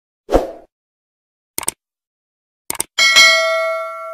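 Subscribe-button animation sound effects: a short low thump, two pairs of quick clicks, then a notification bell ding about three seconds in that rings out with several tones.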